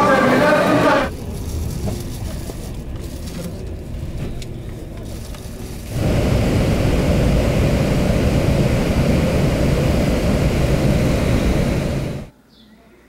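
Steady road and engine noise of a vehicle driving along a highway, loud from about six seconds in. Before that, a second or so of crowd chatter gives way to a quieter stretch of low noise.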